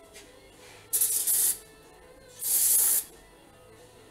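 Two short bursts of pressurised spray hissing, each about half a second long, the first a second in and the second near three seconds.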